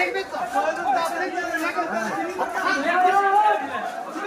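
People talking over one another: several voices chattering at once.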